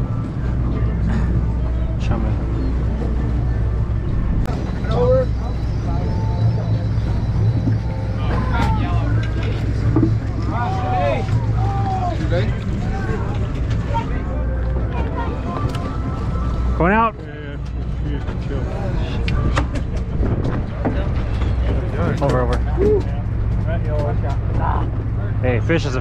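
Sportfishing boat's engine running with a steady low hum, under indistinct voices of people on deck. The level dips briefly about seventeen seconds in.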